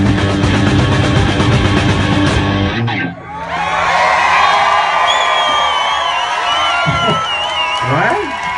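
A live rock band with drum kit and bass guitar playing at full volume stops abruptly about three seconds in at the end of a song. A crowd then cheers and whoops, with a warbling whistle over the cheering.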